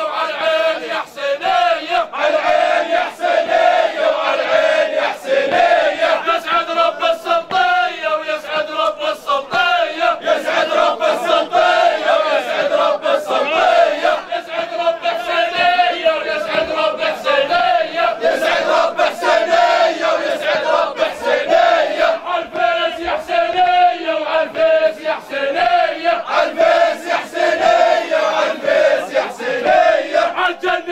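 A crowd of men chanting and singing together, loud and continuous, with a wavering melody held throughout and frequent sharp accents.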